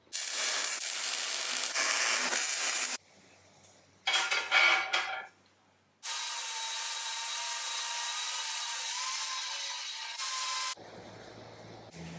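Steel scraping on a steel table top for about three seconds, then again in a short burst. From about halfway, a bolt chucked in a cordless drill is ground against an angle grinder's wheel: a steady grinding run of about five seconds that cuts off suddenly.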